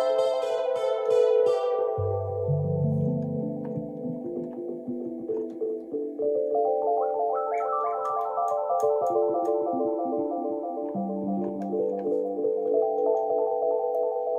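Yamaha Reface CS synthesizers played by hand: sustained chords, with a low bass part coming in about two seconds in and a run of quick stepping notes climbing from about six seconds.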